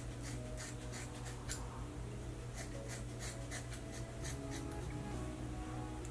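Scissors snipping through a synthetic wig's long hair, a run of quick, irregular cuts. Faint background music underneath.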